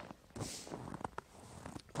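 Faint footsteps crunching on packed snow, with a couple of light clicks about a second in.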